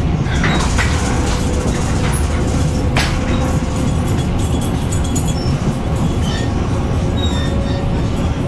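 Ride noise inside a Taiwan Railway EMU500 electric multiple unit under way: steady wheel-on-rail rumble with a few sharp clicks, the loudest about three seconds in, and a faint steady tone running through it.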